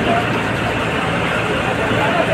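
John Deere 5405 tractor's diesel engine running steadily, with people's voices around it.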